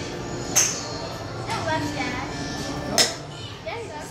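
Two sharp golf-ball strikes by a golf club, about two and a half seconds apart, over background chatter and children's voices.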